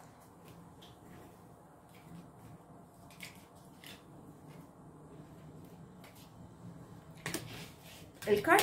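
Faint, sparse clicks and light rustles of a tarot deck being handled, over quiet room tone, with a slightly louder click near the end as a card is laid on the table.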